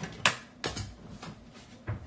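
Four sharp clicks or taps, the loudest about a quarter of a second in, the rest spaced roughly half a second apart.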